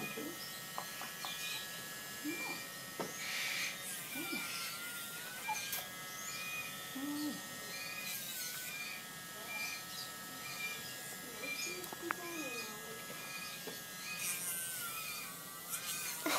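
Small handheld rotary grinder running with a steady high whine, its pitch dipping briefly about three times as the bit is pressed against an African grey parrot's nails to file them down.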